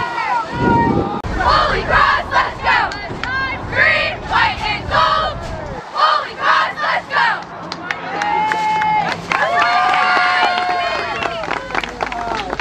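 A cheerleading squad shouting a chant together: rhythmic short shouted syllables, then two long drawn-out calls in the second half.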